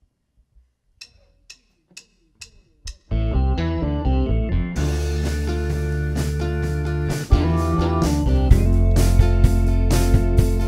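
A count-in of five sharp clicks about half a second apart, then a full band comes in together about three seconds in: acoustic guitar, electric guitar, bass guitar, keyboard and drum kit playing an instrumental intro, with the drums hitting harder from about seven seconds in.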